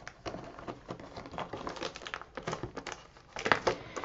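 Cellophane shrink wrap crinkling in irregular crackles as it is cut open and pulled off a ring album, with a louder burst of crinkling near the end.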